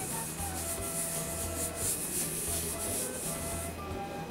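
Hand rubbing the back of a sheet of paper pressed onto a painted stone slab in repeated dry strokes, taking a monotype print; the rubbing stops near the end.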